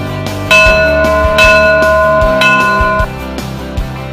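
A small hanging bell rung by its rope, struck three times in about two seconds. Each strike rings on over background music with guitar and a steady beat.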